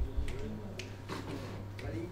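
Finger snaps at a steady tempo, about two a second, counting in the band before the song starts, over faint murmuring voices.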